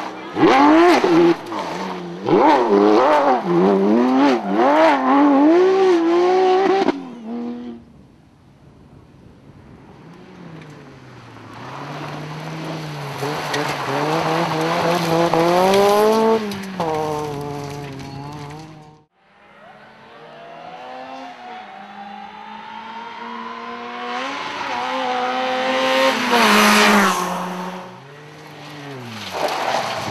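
Rally car engines at full effort on a gravel stage, one car after another. First a Porsche 911 rally car revs hard and rises and falls in pitch through quick gear changes for about seven seconds. Then one car and later another approach, each with an engine note that climbs and grows louder before falling away as it passes. Near the end, loud revving starts again.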